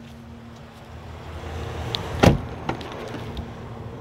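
A Jeep Wrangler door shutting with one solid thunk about halfway through, amid handling and wind noise, followed by a lighter click.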